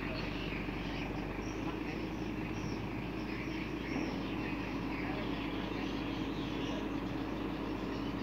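A truck engine running steadily, a constant low hum, with faint voices in the background.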